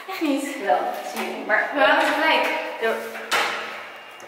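A woman talking in short bursts; the speech recogniser made out no words.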